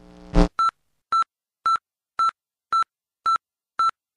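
Computer error-alert beeps: seven short, identical electronic beeps at an even pace of about two a second, signalling a system error. Just before the first beep, a brief loud burst of noise cuts off.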